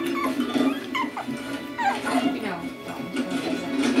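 Puppies giving short, high cries that slide up and down in pitch as they play-fight, over steady background music.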